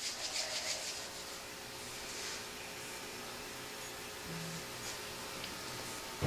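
Quiet room tone: a low steady hiss with a faint steady hum under it.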